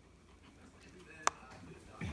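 A dog whining faintly, with one sharp click a little past halfway through.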